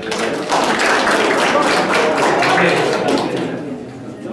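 Audience applauding: many hands clapping at once, starting abruptly and dying away near the end.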